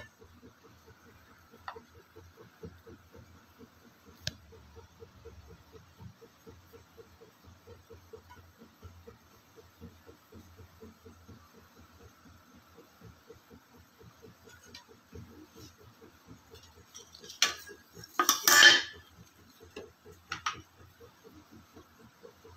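Steel ladle clinking and scraping against a non-stick kadhai and a serving plate as thick rabri is spooned out, mostly faint, with a louder clatter of metal about eighteen seconds in and a smaller clink near the end.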